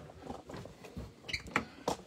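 A few soft knocks and clicks of movement and handling, with three short sharp clicks in the second half.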